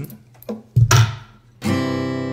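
Acoustic guitar, capoed higher up the neck, strummed in a G-chord shape that sounds as a C chord. One strum about three quarters of a second in fades out, and a second strum near the end rings on.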